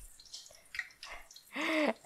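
Eggplant slices frying in hot vegetable oil: faint, scattered crackles and pops, with a brief louder sound about one and a half seconds in.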